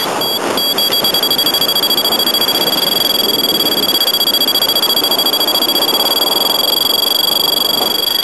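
A paragliding variometer beeping a few times, then holding a steady high electronic tone, over a loud rush of wind on the microphone in flight.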